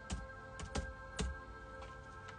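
Faint background music of steady held tones, with a handful of light, separate clicks.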